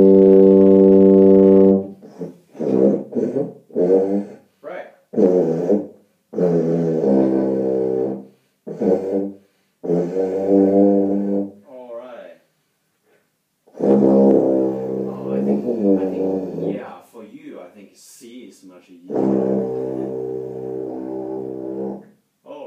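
C tuba playing low notes on G: a steady held note at the start, then a string of short, wavering tries, and a long steady held note near the end.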